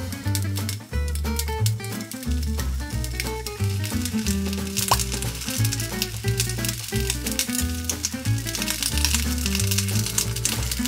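Background music, loudest in the mix, over pieces of Japanese long onion sizzling in oil in a frying pan as they are turned to brown.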